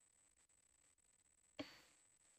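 Near silence on the control-room comms audio: faint hiss with a steady thin high whine. Near the end comes a single short click followed by a brief rush of hiss that fades away.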